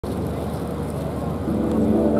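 Murmur of an outdoor crowd over a steady background hum. About a second and a half in, the dance music starts with low held notes.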